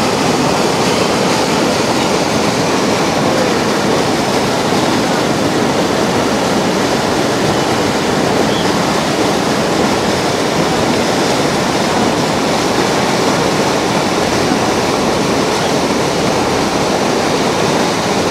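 River water released through the open gates of a barrage, churning in heavy turbulent rapids below it: a loud, steady rush of water.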